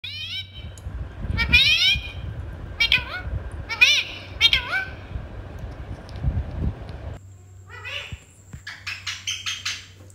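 Rose-ringed (Indian ringneck) parakeet calling: a run of short squawks about a second apart, each dipping and rising in pitch, then a quicker cluster of chattering calls in the last two seconds.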